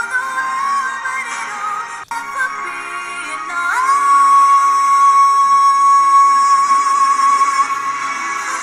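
Young female pop vocalist singing a power ballad over backing music. The sound breaks off for an instant about two seconds in, then she slides up into a long, steady high note held for about four seconds.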